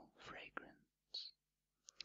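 Soft, close whispering, breathy and faint, with a short hiss a little after the middle and a small click near the end.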